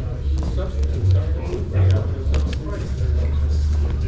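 Indistinct voices and a low rumble of a busy hall, with several short clicks of rigid plastic card holders knocking together as a stack of cards is flipped through by hand.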